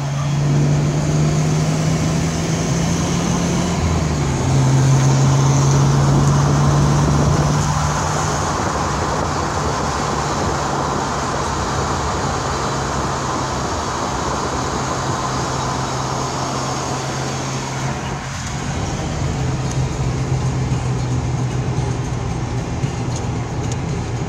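BMW E30's M20B20 2.0-litre inline-six engine pulling steadily while driving, heard from inside the cabin over road noise. Its note climbs slightly, dips briefly about four seconds in, then holds steady and slowly falls, rising a little again near the end.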